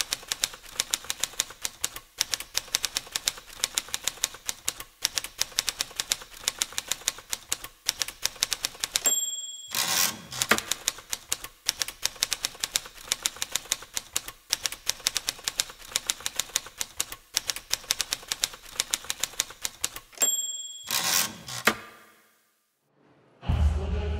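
Manual typewriter keys clacking in fast, uneven strokes. Twice, about nine seconds in and again near the end, the margin bell dings and the carriage is swept back, and the typing starts again after the first return.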